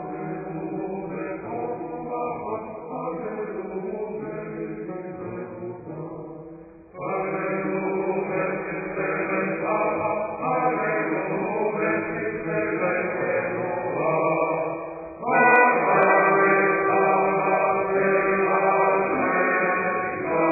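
A Hebrew synagogue psalm, sung as a chant, holding long notes without a break. It grows louder about a third of the way in and again about three-quarters of the way in.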